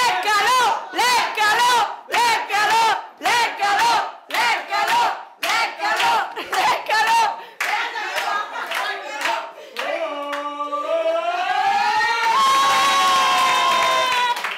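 A group of people chanting high-pitched shouts in rhythm, about two a second. About ten seconds in this turns into one long rising collective 'ooooh' that swells into loud, continuous cheering.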